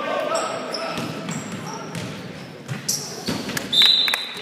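Basketball game in a gym: voices calling out across the court and a basketball bouncing on the hardwood, then a loud, sharp referee's whistle blast near the end.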